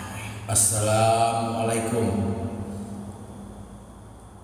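A low-pitched voice, most likely a man's, holding a long, drawn-out note. It starts about half a second in, stays on a steady pitch and fades out by about three seconds.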